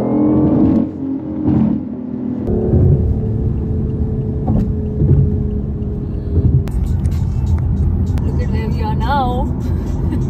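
BMW i8's engine note heard from inside the cabin while driving at speed, a mix of its three-cylinder petrol engine and artificial engine sound played through the car's speakers. After about two and a half seconds the pitched note gives way to a steadier low rumble of road noise.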